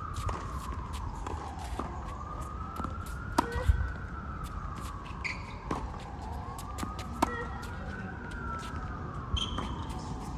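An emergency vehicle siren wailing, slowly rising and falling about once every four seconds. Over it come scattered sharp knocks of a tennis ball being struck and bouncing.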